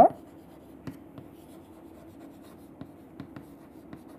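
Chalk writing on a chalkboard: faint, irregular taps and scratches of the chalk as letters are written.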